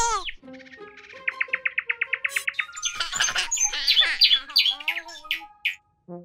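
Cartoon bird chirping and tweeting in quick repeated trills and curving chirps over light background music, opening with a falling whistle.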